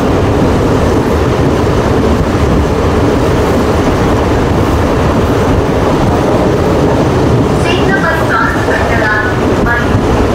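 Moving passenger train heard from inside the carriage: a loud, steady rush of wheel and track noise. A voice joins in briefly near the end.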